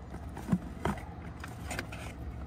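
Steady low outdoor background rumble with a few soft, short clicks.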